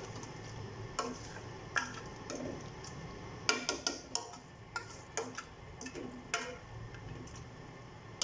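A plastic spoon stirring a watery mix of meat, lentils and spices in a large metal pot, giving irregular light clicks and knocks as it hits the pot's side, a quick run of them around the middle.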